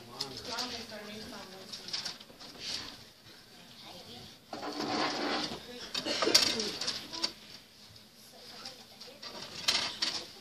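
Quiet, indistinct talking among a few people, with a louder stretch of voices about halfway through.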